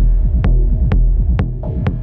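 Dark minimal techno played live on hardware synthesizers and drum machines: a sharp, bright click about twice a second over a deep, steady bass with short falling bass notes. The lowest bass thins out near the end.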